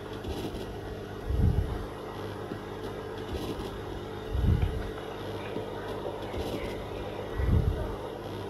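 A steady low hum with a deep thump about every three seconds, three times in all.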